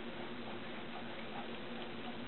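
Room tone: a steady hiss with a low hum and a few faint, irregular ticks.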